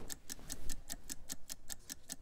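Countdown clock sound effect ticking rapidly and evenly, about six ticks a second, as an auction's closing timer runs down.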